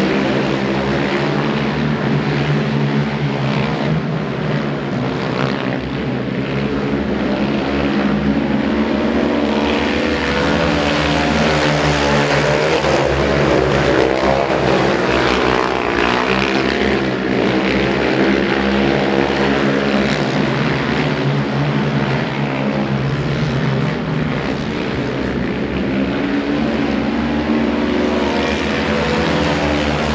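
Four speedway quads racing round a dirt oval. Their engines run hard together, and the pitch wavers up and down throughout as the riders throttle through the bends and along the straights.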